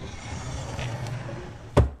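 Spring-driven sliding writing desk of a mechanical table running out on its rails and gears, a steady mechanical whirring with a low hum, stopped by a single sharp knock near the end.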